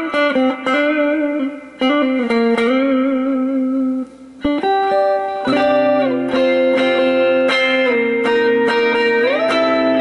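Dean Vendetta electric guitar played through an amplifier: a slow lead line of sustained single notes with vibrato, a short break about four seconds in, then held notes ringing together and a rising string bend near the end.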